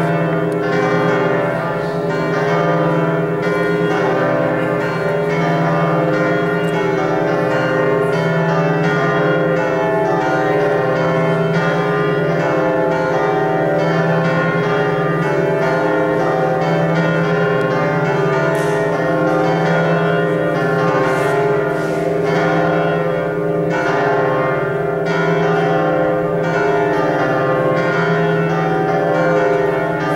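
Church bells ringing continuously, with many overlapping strikes blending into one sustained ring.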